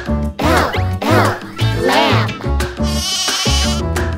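Bright children's song with a steady beat, with a cartoon lamb's bleat ("baa") sounding several times over it. A short high shimmering effect comes in near the end.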